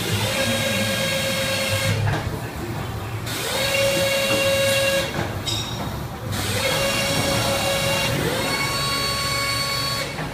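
Auger filler of an automatic powder tray filling and sealing machine running in cycles. A motor whine rises in pitch, holds for a second or two and stops, three times over, above a steady low mechanical rumble.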